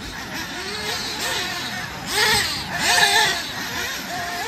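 Radio-controlled off-road buggies being driven on a dirt track, their motors whining up and down in pitch as they speed up and slow for the turns. Two louder passes with a hiss of tyres on dirt come about two and three seconds in.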